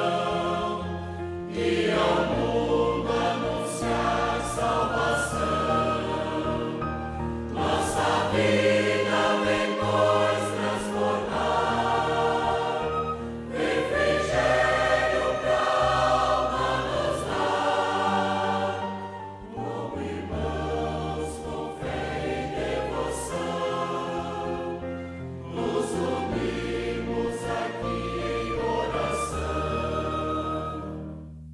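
A choir singing a hymn with accompaniment, in phrases about six seconds long.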